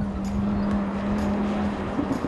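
Audi R8 Spyder's V10 engine running at steady revs as the car approaches, with tyre and road noise; the note holds one pitch and fades near the end.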